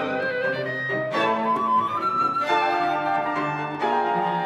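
Live chamber ensemble of flute, clarinet, violin, cello and piano playing a fast contemporary piece together, with chords struck together about a second in and again about two and a half seconds in while an upper melodic line climbs.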